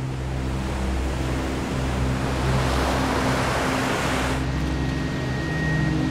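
Surf breaking on a pebble shore, a rushing wash that swells and then cuts off abruptly about four seconds in. It gives way to a steady machine hum with a thin high whine.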